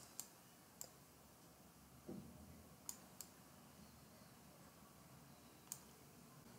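Near silence, with a handful of faint, sharp clicks scattered through it.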